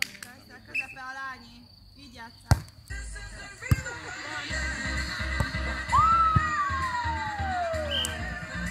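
A beach volleyball rally: sharp smacks of hands striking the ball, once about two and a half seconds in and again a second later, over voices on the court. Background music with a steady beat comes in about three seconds in, and a long tone falls in pitch near the end.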